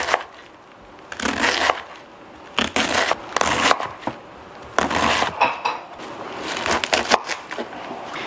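Chef's knife slicing a head of red cabbage into thin shreds on a wooden cutting board: about six crunching cuts, roughly a second apart, each ending as the blade meets the board.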